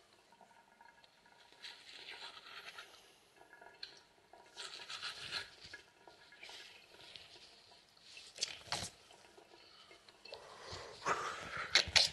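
Water from a bathroom sink tap splashing in short hissing bursts as hands and face are washed. Near the end comes a rising rustle of a duvet and bedsheets as someone stirs in bed.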